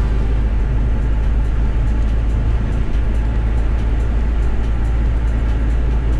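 Steady low rumble of road and wind noise from a moving vehicle, heard from on board.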